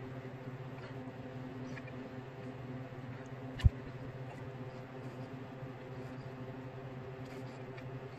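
A steady low electrical hum, with one sharp knock a little over three and a half seconds in and a few faint ticks of small handling.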